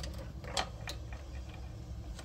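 A few faint, sharp clicks and light knocks of objects being handled, over a low steady hum.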